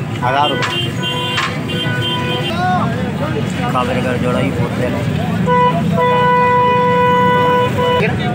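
A horn giving steady single-pitched toots over crowd chatter: two in the first few seconds, then a short toot and a long one of nearly two seconds in the second half, the long one the loudest.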